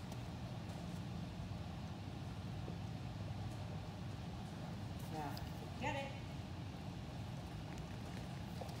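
Steady low hum of a large room's ventilation, with a brief word or two from a voice about five seconds in.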